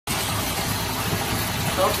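A steady rushing noise runs throughout, and a voice says "okay" near the end.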